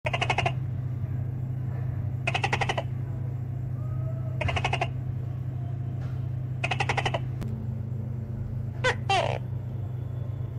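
Tokay gecko calling: short, rapid-pulsed croaks repeated about every two seconds, then near the end a quick two-syllable call falling in pitch, over a steady low hum.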